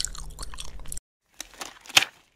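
Chewing gum smacked close to the microphone: wet, clicking mouth sounds. They cut off suddenly about halfway through, then a few fainter clicks return, with one sharper click near the end.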